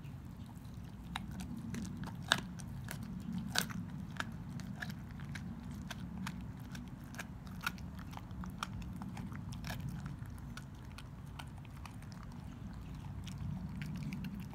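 Dog chewing a raw young beef rib, the soft bone crunching in irregular sharp cracks, with two loudest snaps at about two and three and a half seconds in.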